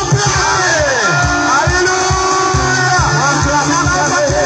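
Live gospel worship music over a loudspeaker system: singing voices over a band with a steady beat.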